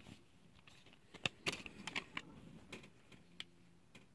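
Faint plastic clicks and handling of a CD being pressed off the hub of its plastic jewel case and lifted out: a few sharp clicks, spread over about two seconds from about a second in.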